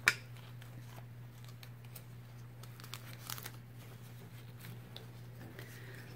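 Faint crinkling and rustling of tape and cap fabric as hands smooth strips of tape down over the cap's band. There is a sharp click right at the start, and a steady low hum underneath.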